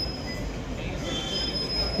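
Noise of a street crowd and traffic, with a thin high whistle-like tone held through most of it and a shorter, lower pair of tones about a second in.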